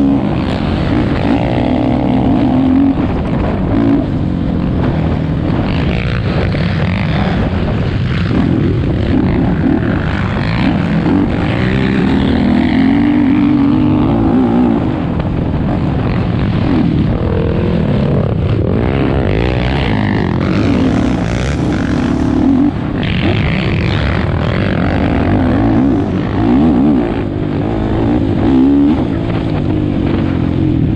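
Sport quad's engine heard from the rider's helmet, revving up and down again and again as it is ridden hard over rough dirt track, with wind and other quads' engines mixed in.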